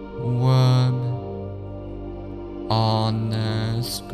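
Slow new-age background music: long, held chant-like tones over a steady drone, one swelling in just after the start and another a little under three seconds in.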